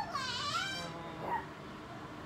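A high-pitched squealing cry that dips and then rises in pitch, followed by a shorter squeal about a second later.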